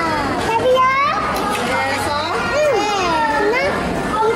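Young children's high-pitched voices, talking and exclaiming excitedly.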